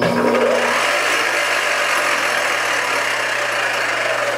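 Spindle drive of a Supermax YCM-16VS milling machine, a Bridgeport-type knee mill, switched on in forward. It comes up to speed in the first half second and then runs steadily with a loud, rough mechanical noise. The noise comes from a fault in the spindle gearing or timing belt that the owner cannot identify.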